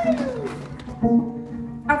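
Live acoustic folk band: a bowed string slides down in pitch at the start, held string notes sound under it, and a plucked upright-bass note comes in about a second in. A voice enters just before the end.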